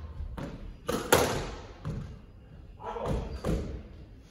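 Squash ball knocks and thuds echoing around a glass-backed squash court: several sharp hits, the loudest just over a second in.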